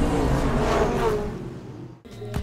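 Electronic theme music of a TV title sequence, fading out over the last second.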